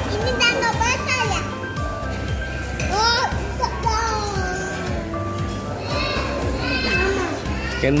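High-pitched voices of young children, heard over background music.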